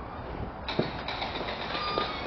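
Steady outdoor background noise with a low rumble, and a single sharp click a little under a second in.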